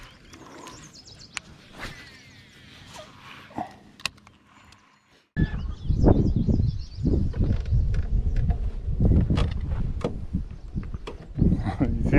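Wind buffeting the camera microphone in irregular low rumbling gusts. It starts abruptly about five seconds in and is the loudest sound. Before it there is a quiet stretch with a few faint clicks.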